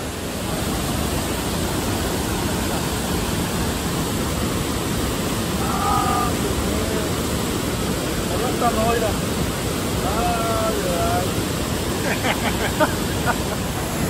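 Steady rushing roar of water pouring out of a dam's outlet into the churning pool below.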